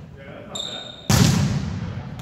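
A volleyball being hit by a player's hands: one sharp slap about a second in, ringing on in the echo of a large gym. Just before it comes a short high squeak.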